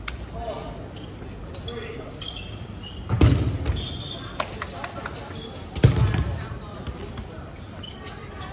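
Two loud thumps of dodgeballs striking the court or a player, about three seconds apart, among the calls of players on court.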